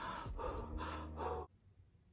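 A woman breathing hard through her mouth in about four quick, audible breaths, strained and uncomfortable while trying to force an ear-piercing stud through her earlobe; the sound cuts off suddenly about a second and a half in.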